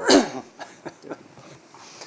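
A person's short laugh with a falling pitch, followed by quiet room tone with faint small sounds.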